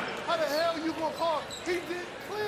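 Basketball sneakers squeaking on a hardwood court: a quick series of short squeaks as players turn and shuffle, over arena murmur.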